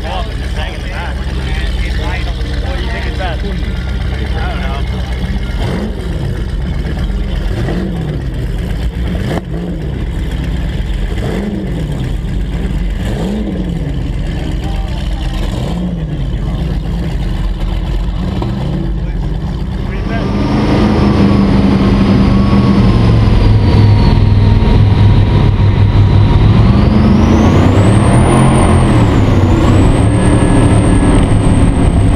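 Twin Mercury 1350 engines of an MTI 48-foot catamaran running at low speed with a steady low drone. About two-thirds of the way through they are throttled up and grow louder, and a high whine climbs near the end as the boat gets up to speed.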